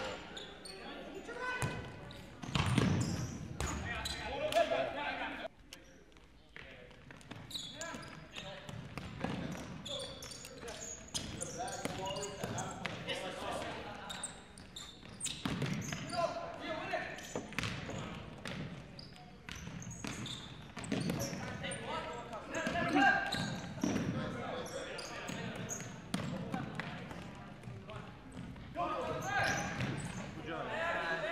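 Futsal ball being kicked and bouncing on a hardwood gym floor, a string of irregular knocks echoing in the large hall, amid players' and spectators' indistinct voices.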